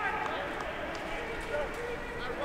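Rugby players shouting and calling to each other at a maul on an outdoor pitch, with a few short knocks of contact.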